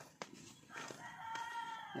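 A rooster crowing: one long call that starts about three-quarters of a second in and runs to the end. A single sharp knock comes shortly before it.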